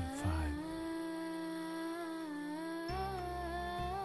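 A singing voice holding a long, slowly bending note in a Kannada devotional song to Hanuman, with a low accompaniment joining about three seconds in.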